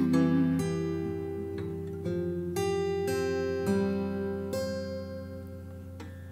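Acoustic guitar playing a slow run of chords with no singing, a new chord every half second to a second, each ringing and fading. It gets quieter toward the end.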